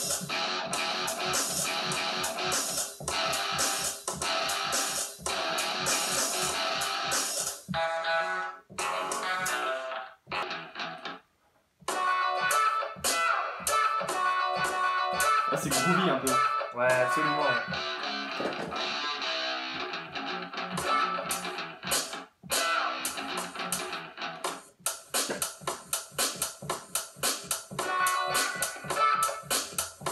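Rock loops with guitar parts triggered from pads in the Drum Pads 24 app on a tablet, layered into one track. The music cuts out briefly about ten seconds in and once more, for a moment, past the middle. Near the end it turns into fast, choppy repeated hits.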